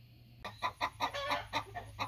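Chickens (laying hens) clucking, starting about half a second in with a quick run of short clucks.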